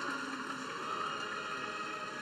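Steady low background noise of a large indoor arena, with a few faint steady tones and no distinct events.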